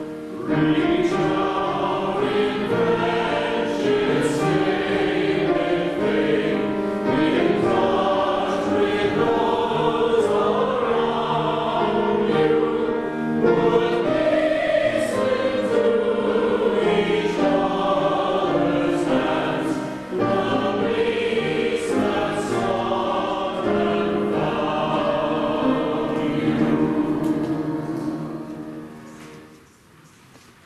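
Church choir singing an anthem in phrases of held notes, with brief breaks between phrases.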